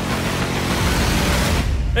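A pontoon boat's motor running steadily, with a broad rushing noise over a low hum.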